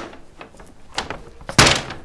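Paper shopping bag set down on a tabletop: a short, loud thud and paper rustle about one and a half seconds in, after a light click about a second in.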